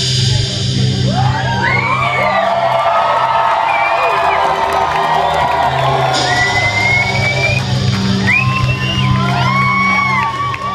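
A bass-heavy hip-hop beat plays through a concert hall's sound system with no rapping over it. From about a second in, the crowd whoops and shouts over the beat, with high cries that rise and fall.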